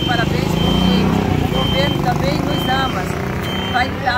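A motor vehicle's engine running close by, loudest about a second in, with a high electronic beep repeating about once a second.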